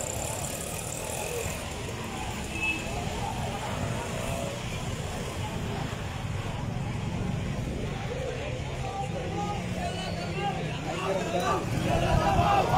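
Outdoor street crowd: many voices talking at a distance over a steady low rumble, with the voices growing louder near the end.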